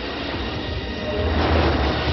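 Spaceship sound effect on an old TV commercial's soundtrack: a rushing rumble over a steady low hum, growing louder in the second half.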